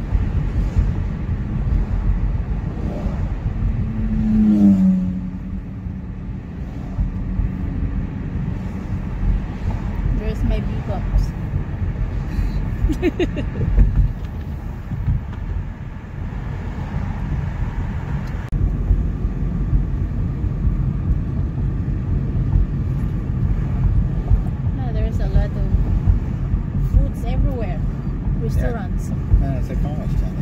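Cabin noise of a car driving on city streets: a steady low road-and-engine rumble, with a brief louder falling hum about four seconds in.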